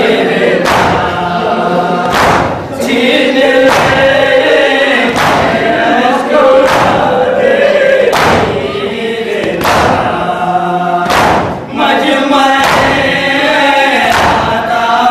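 Noha lament sung by a lead reciter through a microphone, with a group of men singing along. Through it runs the thud of chest-beating matam, about once every second and a half, keeping time with the lament.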